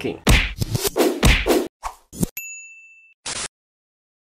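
Logo-intro sound effects: a quick run of sharp hits and whooshes, then a bright ding that rings for well under a second, and a short burst of static.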